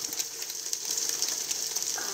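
Eggs frying in small pans on a camping stove: a steady, high sizzle full of rapid little crackles and pops.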